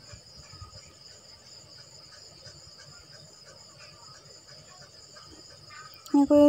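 Faint, steady, high-pitched insect chirring in the background, with no other clear sound.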